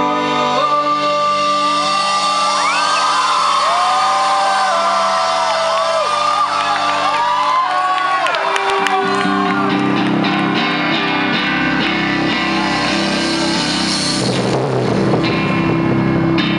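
Live rock band playing through a concert PA, with the crowd shouting and whooping. The opening sustained chords give way to the full band, bass and drums, about halfway through.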